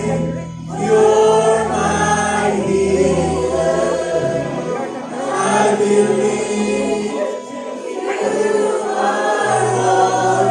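A congregation singing a worship song together with a live band's keyboard and electric guitar, in phrases with brief breaks between them.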